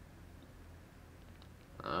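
Quiet room with a low steady hum and two faint small clicks from the dropper cap of a glass beard oil bottle being turned to draw the dropper out. A man's voice starts near the end.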